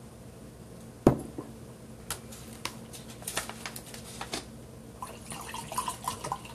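A sharp knock about a second in, then scattered small clicks and taps, and water pouring from a plastic bottle into a glass near the end.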